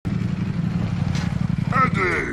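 Sport motorcycle engine running low and steady with a rapid, even beat. A voice starts just before the end.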